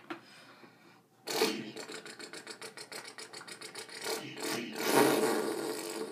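A person imitating a car engine with the mouth: a buzzing lip flutter that starts about a second in, pulsing about ten times a second, swelling louder near the end and then cutting off.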